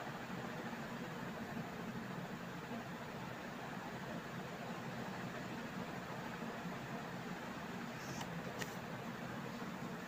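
Steady low background hum with an even hiss, with two faint ticks about eight seconds in.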